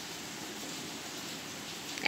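Steady, even background hiss with no distinct spoon scrapes or taps.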